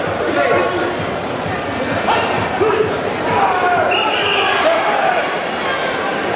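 Many people talking at once in a large, echoing sports hall, with a laugh at the start and occasional dull thuds.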